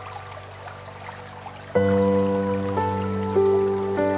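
Slow, calm piano music: a soft held chord fades, then a louder new chord is struck a little before the middle, and two higher notes follow, each left to ring.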